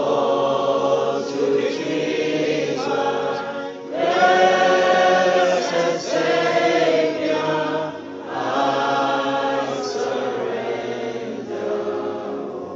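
A choir singing a slow worship song in long held phrases, with a short break about four seconds in and again about eight seconds in.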